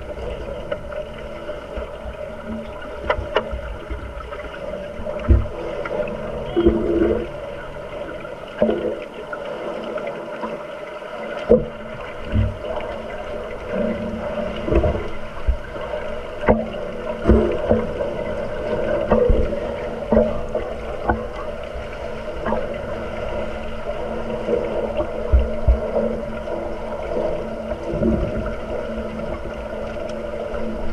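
Underwater sound of an underwater rugby game picked up by a submerged camera: a steady hum with bubbling and many irregular dull knocks and bumps from players and scuba divers moving through the water.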